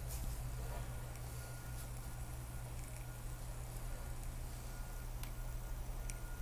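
Steady low electrical hum with a faint thin high tone above it, and a few faint clicks near the end.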